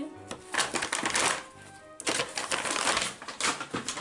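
Crackly rustling and clicking of paper shopping bags and product packaging being handled, in two bursts, the second and longer one starting about two seconds in.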